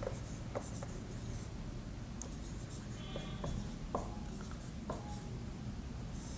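Marker pen writing on a whiteboard: faint, scattered scratches and light taps as the letters are drawn.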